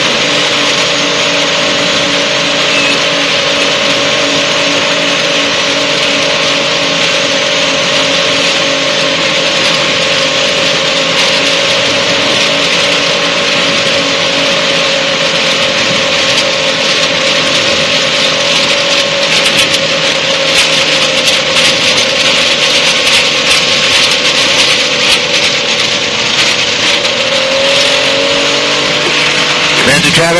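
Light-sport aircraft engine running at idle under a loud rush of airflow as the plane glides in on final approach with full flaps. In the second half the air noise grows rougher and crackly, and near the end the engine pitch rises.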